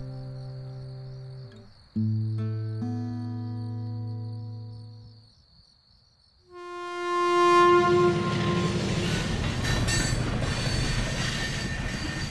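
Two long, low held tones over steady cricket chirping fade to near silence about six seconds in. Then a train horn sounds, and the rumble and wheel clatter of a passing train builds and carries on loudly to the end.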